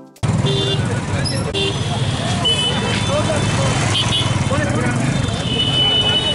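Crowd hubbub on a street, many voices talking at once over a dense rumble of vehicle engines. A high steady tone sounds briefly about two and a half seconds in and again near the end.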